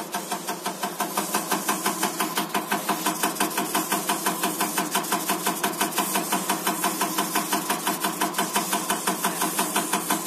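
Diesel injector test bench cycling an electronic unit injector off its cam drive at 350 rpm: an even, rapid ticking about six strokes a second over the steady hum of the bench's drive, getting louder about a second in.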